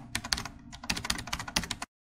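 Keyboard typing sound effect: a quick run of clicking keystrokes that cuts off suddenly near the end.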